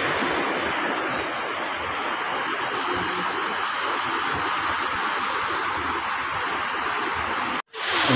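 Steady rushing wash of sea surf on a beach, even and unbroken except for a very brief dropout just before the end.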